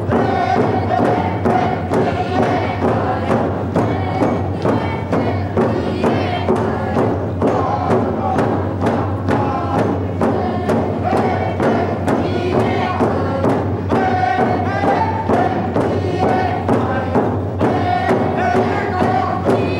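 A dance group singing a song together over a steady drumbeat of about two beats a second.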